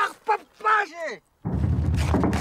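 A man shouting in Inuktitut on a film soundtrack played over a video call: high held calls that break off in a falling cry about a second in. Half a second later a loud, dense noise with a heavy low rumble starts abruptly and keeps going.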